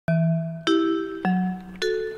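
A four-note chime, each note struck and ringing down, about every 0.6 s, alternating low and high.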